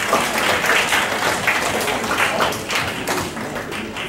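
An audience clapping, a dense patter of many hands that starts off loud and thins out near the end.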